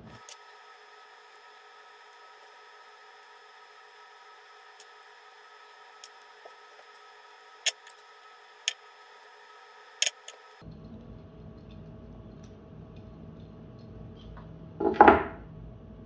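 Scattered sharp clicks of a screwdriver and small metal screws as the four screws are taken out of a JBL PRX800 compression driver, over a faint steady hum. A louder clatter comes near the end.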